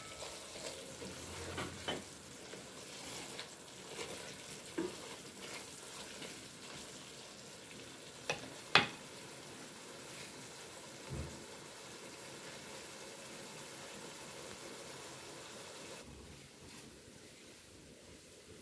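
Meat curry sizzling in a stainless steel pot as it is stirred with a wooden spoon, with a few sharp knocks of the spoon against the pot, the loudest about eight to nine seconds in.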